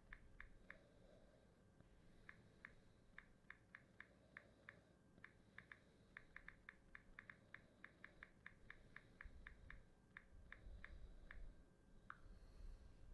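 Near silence broken by faint, short clicks, several a second, coming in irregular runs throughout.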